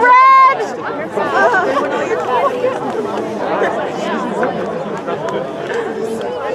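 Spectators chattering, many voices overlapping, after one loud, drawn-out yell in the first half-second.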